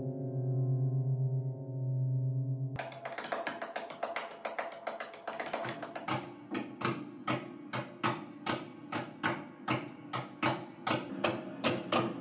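A grand piano's low string, struck with a felt mallet, rings steadily. About three seconds in, sharp taps on the piano's underside begin, dense at first and then about three a second. Each tap sets the open strings ringing in sympathy.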